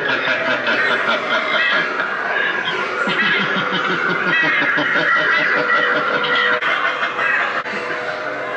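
Sound from a Halloween clown-scarecrow animatronic: music with snickering laughter over it.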